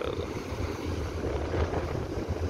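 Wind buffeting the microphone in uneven gusts, over the wash of surf breaking on the rocks.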